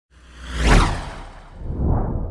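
Whoosh sound effect over a deep bass rumble, swelling to a peak just under a second in and fading away, then a second, smaller whoosh rising near the end.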